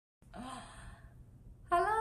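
A woman's breathy sigh lasting under a second, followed near the end by her voice starting to speak.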